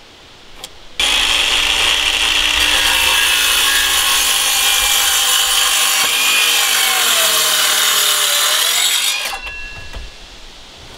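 Cordless circular saw starting about a second in and cutting through a wooden board for about eight seconds, its pitch sagging slowly under load in the second half. The motor spins down and stops near the end.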